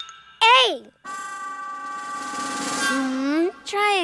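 A cartoon child's voice giving a short rising-and-falling exclamation, then a long held vocal note of about two and a half seconds over a swelling shimmering sound effect, ending in a small dip in pitch; a new voice starts just before the end.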